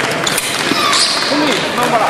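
Fencers' footwork on the piste: quick shoe stamps and short squeaks during a foil exchange, with crowd voices behind.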